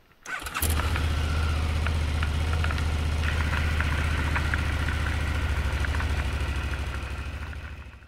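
Motorcycle engine started up, catching about half a second in and then idling steadily with an even low pulse, fading out near the end.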